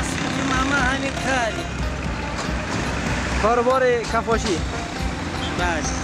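Steady road-traffic noise, with voices and music over it.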